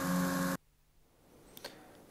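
Paddlewheel pond aerators splashing water with a steady motor hum, cut off abruptly about half a second in; a faint click near the end.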